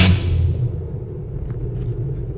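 Loud rock music cuts off at the very start, leaving a steady low rumble of wind on the microphone of a camera riding on a moving bicycle.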